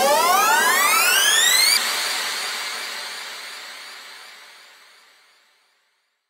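Synthesizer riser at the end of an electronic dance track: one pitched tone glides smoothly upward for about two seconds. It then holds its top note and fades out over the next three seconds.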